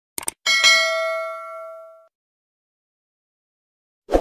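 Two quick clicks, then a bright bell-like ding that rings on and fades out over about a second and a half. It is a subscribe-button animation's click-and-notification-bell sound effect.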